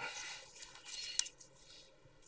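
Faint handling noise from gloved hands moving small containers on a bench: soft rustling and scraping, with one light click about a second in.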